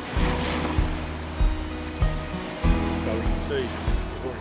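Surf breaking on a beach, a wash of noise strongest in the first second, under background music of steady held notes.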